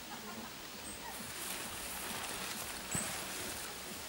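Tent fabric rustling as it is handled, with a short knock about three seconds in and two brief high bird chirps.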